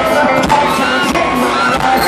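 Rock band playing live at full volume through the arena sound system: a male lead vocal over a driving drum beat, keyboard and guitars.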